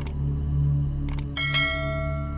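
Steady, slowly pulsing low meditation-music drone. Sharp clicks come at the start and again about a second in, then a bright bell-like chime is struck once and rings out slowly.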